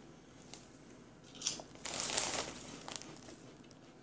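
Crunching and crinkling: a wavy potato chip being bitten and chewed while the foil chip bag is handled. A short crackle comes about a second and a half in, then a longer crackly stretch of about a second.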